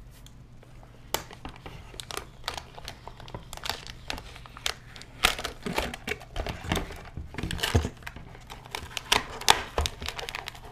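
Clear plastic wrapping crinkling in irregular crackles as a sealed vinyl figure is handled and lifted out of its box.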